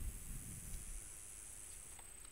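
Quiet background with a faint steady high-pitched drone of crickets and a soft thump at the very start.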